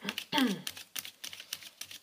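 A tarot deck shuffled overhand by hand: a run of quick, irregular clicks as the cards slap against each other. A short voiced sound falling in pitch comes from the woman shuffling, about half a second in.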